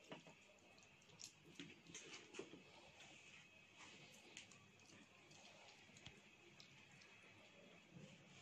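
Near silence with a few faint scattered clicks and soft ticks, as a lime is squeezed by hand over a steel platter of chopped smoked herring.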